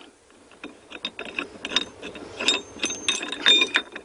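Ratchet wrench clicking in short, irregular runs as the bolts of a ski-boom clamp are tightened onto a boat's ski pylon. The clicking starts about half a second in and gets busier in the second half.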